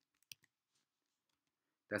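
A few quick, light clicks of a computer keyboard or mouse in the first half-second while the cube-root sign is typed into the document, then near silence.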